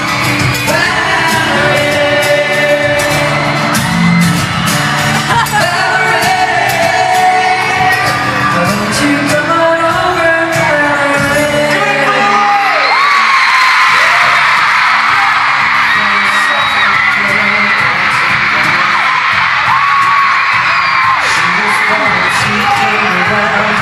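Boy band singing live with a backing band in an arena, heard from the stands. About halfway through the low end of the music drops away and a crowd's high screaming rises over the thinner singing.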